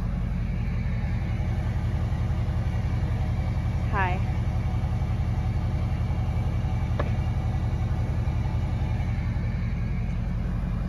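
Truck engine idling steadily, a low, evenly pulsing hum.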